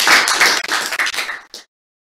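Audience applauding, the clapping thinning out and then cutting off abruptly about a second and a half in.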